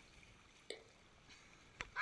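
Near silence, with one faint short sound a little under a second in and a soft click just before the end.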